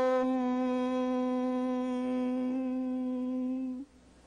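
A man's voice holding one long hummed note at a steady pitch, as in a chant, that stops abruptly shortly before the end.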